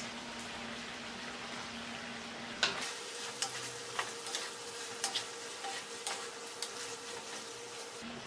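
Meat and peas sizzling steadily in a wok. From just under three seconds in, a wooden spatula stirs the mix, with irregular clacks and scrapes against the pan.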